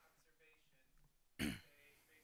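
A person coughs once, a short loud burst about one and a half seconds in, over faint distant talk.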